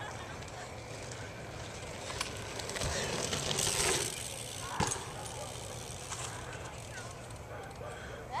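BMX bike tyres running over a dirt track, growing louder from about two and a half seconds in as the rider passes and takes a jump, with a short knock a little before five seconds.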